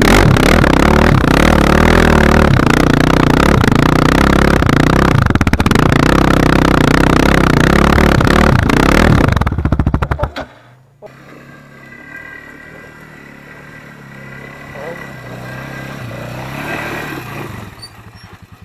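Quad (ATV) engine running under load on a climb, its pitch rising and falling with the throttle. About ten seconds in it stops abruptly, leaving a much quieter, steady engine idle.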